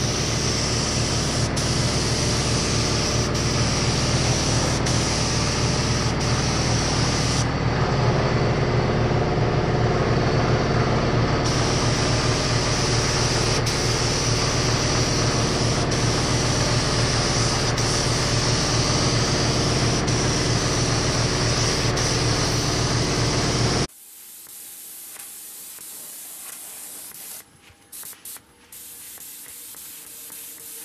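Iwata LPH 400 gravity-feed HVLP spray gun spraying paint, a steady loud hiss over a low hum. The hiss thins for a few seconds about eight seconds in, then cuts off suddenly about six seconds before the end, leaving a much quieter background hum.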